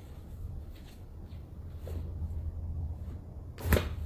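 A single sharp crack near the end as the arm is pulled in a chiropractic traction manipulation: a joint releasing (cavitation pop). A low steady hum runs underneath.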